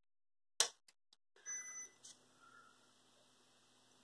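Rocker power switch of a 2500 W pure sine wave power inverter clicking, then the inverter giving one short high beep as it restarts after shutting down. A faint steady hum follows.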